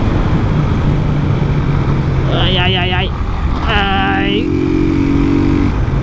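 Motorcycle engine running steadily at cruising speed, with road and wind noise on the microphone. About two and a half seconds in come two short wavering vocal sounds, each under a second long.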